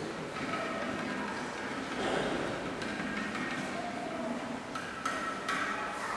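Church music in a large cathedral, with held sung notes and no speech. A few sharp knocks come near the end.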